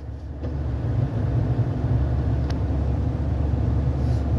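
Low, steady rumble of a car heard from inside the cabin, growing louder about half a second in and then holding level.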